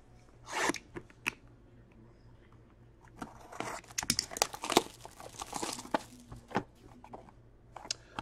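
Plastic wrap being cut and torn off a sealed box of trading cards and the box opened: a couple of short scratchy rips early, then a few seconds of crinkling and tearing with sharp clicks in the middle.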